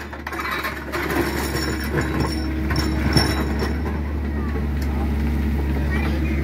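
Mini excavator's diesel engine running steadily under hydraulic load as the bucket scrapes through soil and broken concrete and lifts a full scoop, with scattered knocks of rubble.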